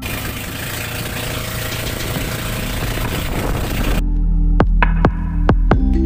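Steady rushing noise of a motorised outrigger boat under way, its engine running under wind and water noise; about four seconds in it cuts to background music with a steady low beat and sharp plucked notes.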